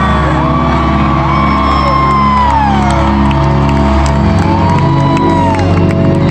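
Live pop music heard from an arena audience: sustained chords over a bass that shifts to a new note about four seconds in. Crowd members whoop and cheer over it in long rising and falling calls.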